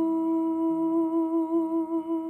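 A woman's voice holding one long hummed note, steady at first and wavering slightly near the end.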